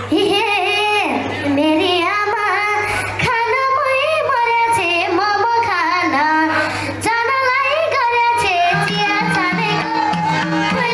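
A young girl singing a Nepali folk melody live into a microphone, amplified through the stage sound system over the band's accompaniment. Her sung phrases break off briefly about a second in, about three seconds in and about seven seconds in.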